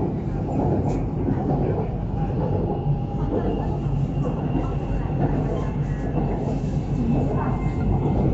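BTS Skytrain car running along the elevated track, heard from inside the car: a steady rumble of wheels and running gear, with a faint high whine for a few seconds in the middle.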